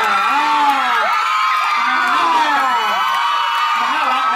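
Audience cheering and shrieking, many high voices at once.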